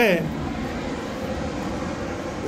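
A man's word trails off at the very start, then a steady, even background noise of the lecture hall carries on with no speech.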